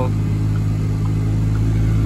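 Pickup truck's engine running, heard from inside the cab as a steady low hum.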